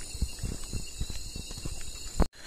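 Footsteps walking along an old brick path: irregular soft thumps a few times a second, over a steady high-pitched hiss.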